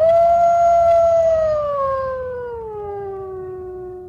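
A single long wolf howl: a quick rise, a held note, then a slow slide down in pitch, ending abruptly. It comes in over dead silence, an added sound effect rather than live sound.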